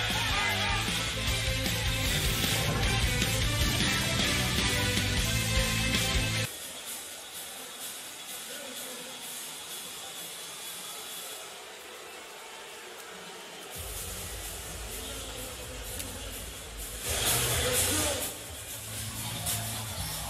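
Background music with a heavy bass beat. About six seconds in, the bass drops out and the sound turns quieter and thinner for about seven seconds, then the beat comes back, with a brief louder swell near the end.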